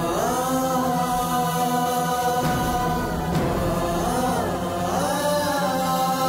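Background score of a sung vocal chant: long held notes that swoop up into each new phrase, over a steady low drone.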